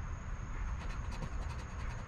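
A coin scratching the coating off a paper scratch-off lottery ticket in quick, short repeated strokes, mostly from about half a second in.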